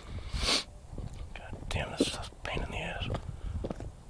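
Whispering: hushed, breathy speech from a person close by, with a short hiss of breath about half a second in.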